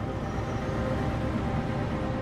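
Steady low rumble of city traffic ambience, with faint background music under it.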